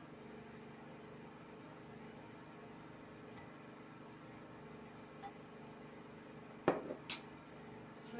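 Glass mixing bowls clinking as condensed milk is scraped from a small bowl into a larger one with a spatula: a couple of faint ticks, then a cluster of sharp glass knocks near the end, over a steady low hum.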